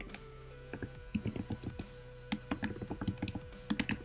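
Computer keyboard typing: quick, irregular keystrokes in short runs as a line of code is typed.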